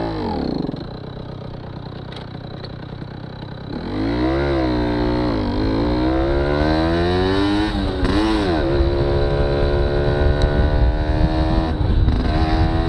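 1992 Aprilia Classic 50 moped's 50 cc two-stroke engine ticking over at a standstill, then from about four seconds in pulling away and accelerating. Its pitch climbs, drops back twice, and climbs again to a steady higher note.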